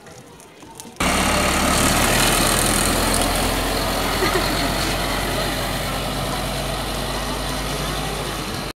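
City bus engine running loud and steady with a low hum as the bus pulls away, starting abruptly about a second in and easing slightly toward the end.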